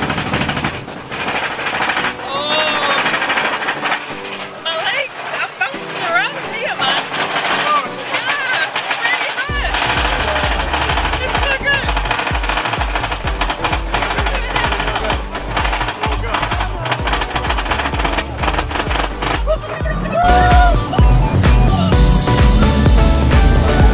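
Roller-coaster mine train of Big Thunder Mountain rattling along its track, with a rapid, dense clatter and heavy rumble setting in about halfway through. Riders laugh and shout over it, with a louder cry near the end as the train speeds up.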